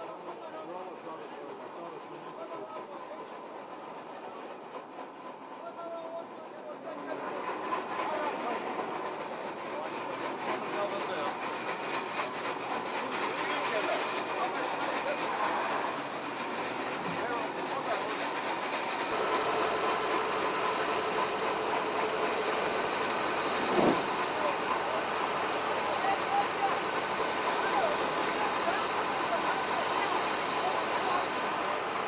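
A heavy vehicle's engine running steadily under people's voices, getting louder about a quarter of the way in and again past the middle, with one sharp knock about two-thirds of the way through.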